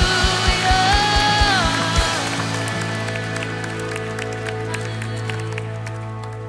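Live worship band ending a song: a steady kick-drum beat, about four a second, under a held sung note that slides down, stopping about two seconds in. A sustained keyboard chord then rings on and slowly fades under scattered applause from the congregation.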